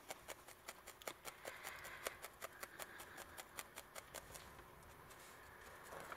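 Felting needle stabbing repeatedly into a ball of wool roving: quick soft pokes at about five a second, becoming fainter after about four seconds.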